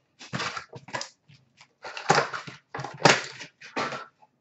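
Hockey card packs and cards being handled: a run of irregular crinkles, rustles and scrapes as a wrapper is worked open and cards are shuffled and set down on the counter.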